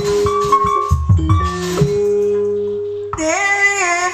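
Live Sundanese jaipong music: deep hand-drum (kendang) strokes under held instrumental tones for the first two seconds, then a singer's voice enters about three seconds in with a wavering, bending melody.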